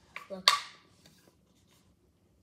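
A short spoken "look", then about half a second in, one sharp, loud click-like knock from handling a plastic drink bottle with a straw lid, fading quickly. A few faint ticks of handling follow.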